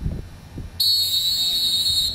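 Referee's whistle blown in one long, steady blast of a little over a second, starting abruptly about a second in: the signal that the ball is ready for the kickoff.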